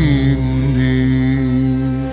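A male voice holds the long final note of a Turkish arabesque-pop ballad, with a slight waver, over sustained backing chords. The note stops right at the end as the song begins to fade out.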